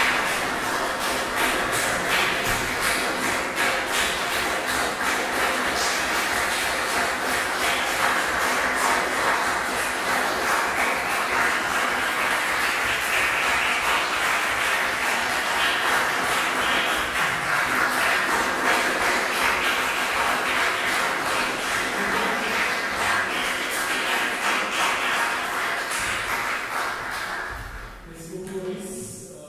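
Audience applauding steadily after a classical performance, dying away near the end.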